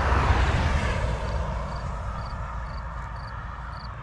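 Air rushing past a helmet-mounted camera on a moving motorcycle, with the engine's low rumble underneath. Loudest just after the start, then gradually quieter.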